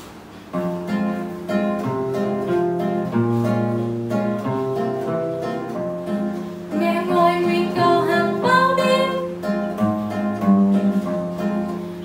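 Acoustic guitar begins playing a slow intro about half a second in, single notes over a bass line. A woman's voice joins in singing about seven seconds in.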